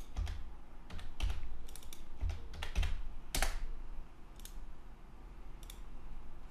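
Computer keyboard typing: a short run of irregular keystrokes entering values, bunched in the first half with the sharpest tap around the middle, then a few isolated taps.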